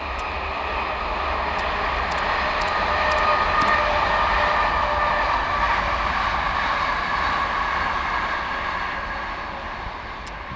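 Distant multiple-unit passenger train passing: a steady rushing hum that swells to a peak a few seconds in, then slowly fades as the train draws away.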